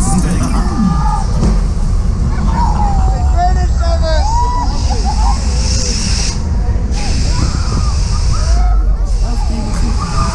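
A Höpler Schunkler fairground ride in motion, heard from on board: a loud, constant low rumble, with voices calling out in gliding pitches and music underneath.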